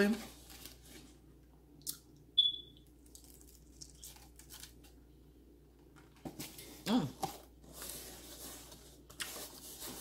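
Soft eating sounds of someone biting and chewing a fried chicken wing: scattered small clicks and mouth noises, the sharpest a short click about two seconds in. An appreciative hummed "mm" comes about seven seconds in.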